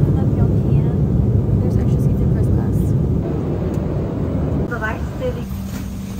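Airliner cabin noise: a loud low rumble that eases off after about four seconds, leaving a steady low hum, with faint voices around it.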